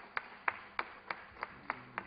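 Hand claps in a steady, even rhythm, about three a second, stopping near the end.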